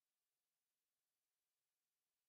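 Near silence: no audible sound, only a faint steady hiss.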